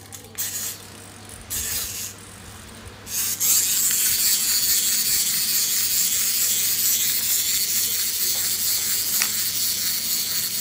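Battery-operated toys running, giving a harsh, steady, hiss-like electronic buzz. It starts about three seconds in, after a couple of short bursts.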